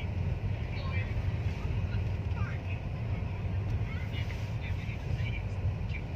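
Steady low rumble of a car driving slowly, heard from inside the cabin, with faint short high chirps scattered over it.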